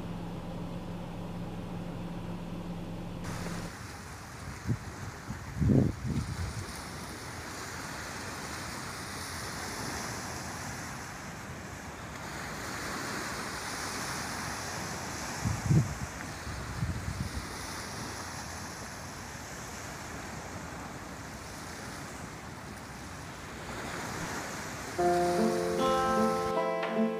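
Waves washing on a lakeshore with wind, an even wash of water noise broken by two low thumps, about six and sixteen seconds in. Before that comes a few seconds of steady low hum, and about a second before the end an acoustic guitar starts playing.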